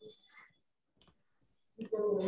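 Faint clicking over a low-level online-meeting line, with a short hiss at the start and a voice starting just before the end.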